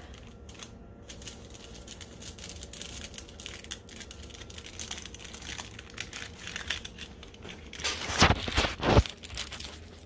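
Aluminium foil crinkling as it is folded and pressed by hand into a small tray: a steady run of light crackles, with a louder stretch of crinkling about eight seconds in.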